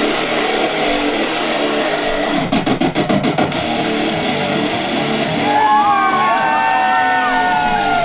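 Wrestler's rock entrance music with guitar, played loud over a PA speaker. About two and a half seconds in it breaks into a fast stutter for about a second, and from about five and a half seconds sliding high tones run over it.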